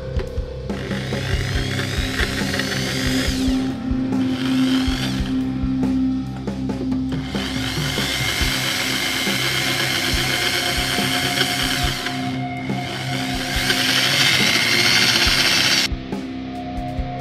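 Electric drill spinning a wooden ring on a mandrel while it is sanded, run in several stretches with short pauses between, its whine climbing in pitch as it speeds up and loudest near the end. Background music plays under it throughout.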